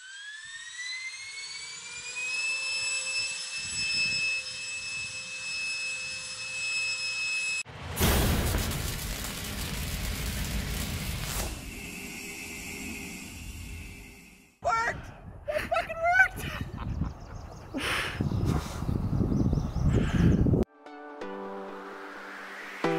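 Handheld electric ducted fan spinning up with a rising whine that levels off after about two seconds and then holds a steady high pitch for several seconds. It is followed by a loud rush of noise lasting several seconds, then short whooshing sound effects and music near the end.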